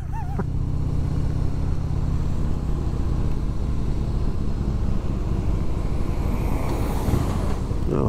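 A 2001 Harley-Davidson Heritage Softail's Twin Cam V-twin engine running steadily at cruising speed, heard from the rider's position under wind and wet-road tyre hiss. The hiss swells about six seconds in.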